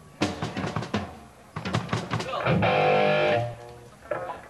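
Between-song noodling by a rock band: a run of drum hits, then an electric guitar chord held for about a second over a low bass note before it is cut off.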